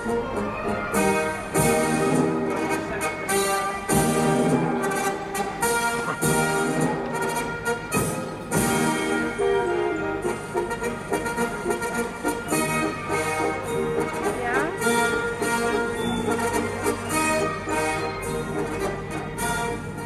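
Orchestral music with brass instruments, played over an arena loudspeaker, with a steady beat.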